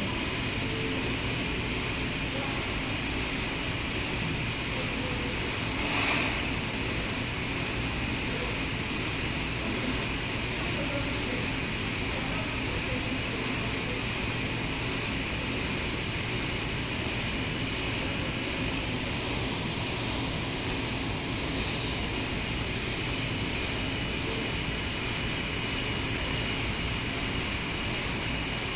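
Steady, even drone of an indoor air-conditioning and ventilation system, with a brief faint rise about six seconds in.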